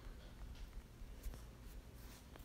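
A few faint, light taps of a finger typing on a smartphone's touchscreen keyboard.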